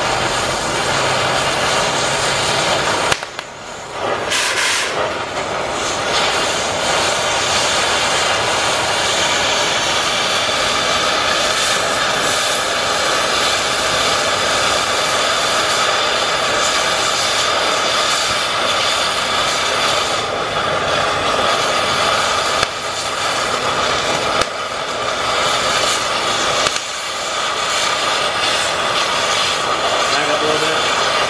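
Oxy-fuel cutting torch running with a loud, steady hiss as it cuts through the steel flange of a heavy truck axle's wheel hub, with a brief drop about three seconds in.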